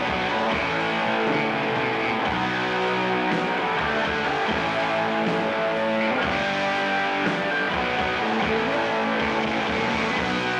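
Live rock band playing: electric guitars holding and changing chords over bass and drums, at a steady level with no break.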